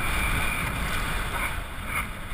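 Wind rushing over a helmet-mounted camera's microphone as a downhill mountain bike descends fast, with the low rumble of its tyres on the pavement. A high steady squeal fades out within the first second.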